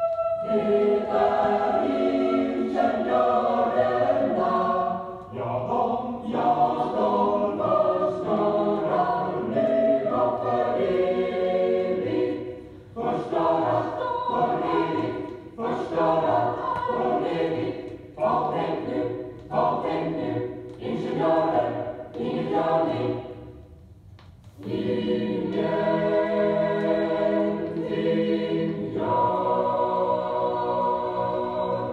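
Mixed choir singing from the LP record: chords in short phrases, broken by a brief pause near the end, then a long held chord.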